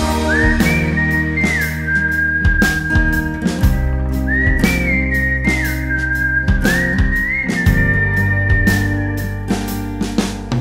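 Instrumental break in an indie rock song: a whistled melody slides between a few long high notes in three similar phrases over bass, drums and guitar.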